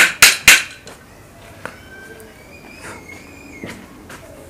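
Hammer striking metal three times in quick succession in the first half-second.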